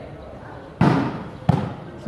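A volleyball struck hard twice in a rally: a loud smack just under a second in, the loudest sound here, followed by a second, sharper hit about two-thirds of a second later, over a low murmur of spectators.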